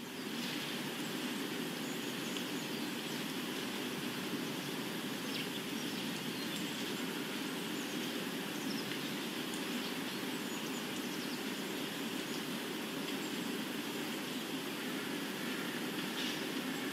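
A steady ambient wash of noise, like an outdoor night soundscape, fades in and holds evenly, with faint scattered high clicks or chirps.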